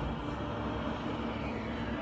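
Steady background noise with a faint low hum, even in level, with no distinct events.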